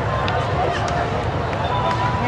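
Crowd babble: many people talking over one another at once, a steady chatter with no single voice standing out.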